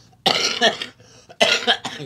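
A person coughing twice, about a second apart.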